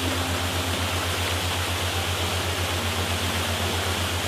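Steady rushing of a waterfall, over a low hum that pulses rapidly, about ten times a second.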